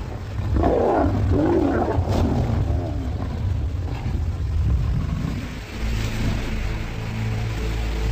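Male lions growling over a kill, the growls loudest in the first few seconds, with low sustained music underneath near the end.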